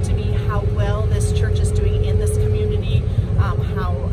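A group of young people chattering and calling out over one another, many voices at once, over a steady low rumble.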